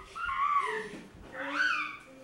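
A small child's voice: two short, high, drawn-out vocal calls about a second apart.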